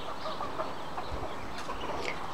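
A flock of Muscovy ducklings feeding: low, scattered soft calls and pecking at food scraps on the ground.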